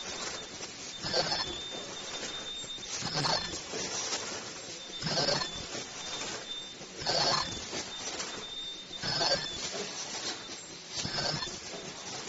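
An automatic KN95 mask-making machine running its cycle, with a burst of sound about every two seconds as each stroke fires. A faint, steady high whine sounds through parts of the cycle.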